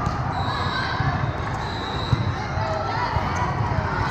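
Indoor volleyball rally in a large, echoing hall: volleyballs being struck and bouncing over a steady murmur of many voices, with one sharp smack about two seconds in.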